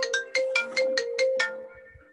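A melodic phone ringtone: a quick run of about eight chiming notes over a held tone, dying away near the end.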